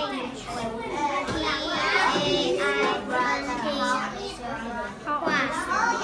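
Children's voices talking, high-pitched and overlapping.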